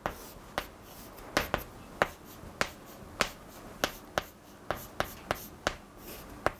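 Chalk striking a chalkboard as Chinese characters are written stroke by stroke: a series of sharp clicks, about two a second, each stroke landing with a tap.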